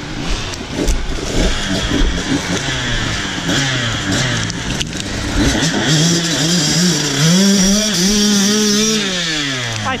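Enduro dirt bike engines revving with the throttle rising and falling, the nearest a KTM enduro bike pulling up a dirt climb under load. It is loudest in repeated blips over the last few seconds, and its note drops away near the end.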